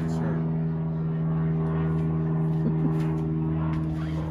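A steady low hum on one unchanging pitch, like a motor or fan running, holding level throughout.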